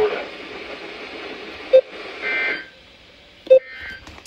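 Weather alert radio giving two short, sharp beeps about two seconds apart as its buttons are pressed, with a brief higher buzzy tone between them. A steady hiss runs underneath and cuts out about halfway through.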